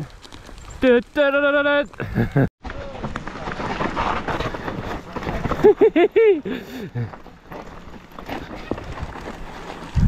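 Mountain bike rolling fast down a rocky dirt trail: tyres crunching over dirt and stones, with the bike rattling over the bumps in an irregular clatter.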